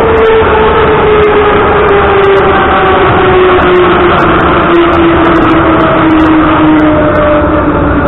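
Moscow Metro train running: steady wheel and running rumble with the electric traction drive's whine falling steadily in pitch as the train slows.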